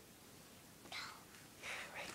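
Faint whispering: two short breathy whispered sounds, one about a second in and one near the end.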